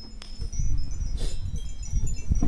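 A hanging wind chime ringing, with thin high tones that linger, over a low rumble that sets in about half a second in.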